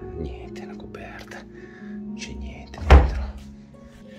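Old wooden storage chest (cassapanca) with its lid being handled, then one heavy wooden thunk about three seconds in as the lid drops shut.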